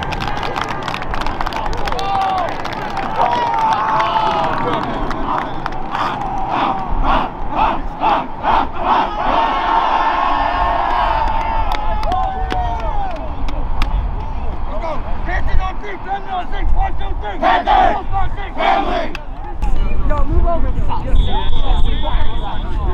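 A football team huddled together, many players shouting and hyping each other up in a loud group cry, with a run of sharp rhythmic hits about two a second partway through. Near the end a short, steady, high whistle sounds, as a referee's whistle does before a kickoff.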